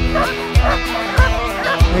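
Background music with a steady kick-drum beat a little under twice a second, with harnessed sled dogs barking and yipping excitedly over it before the run.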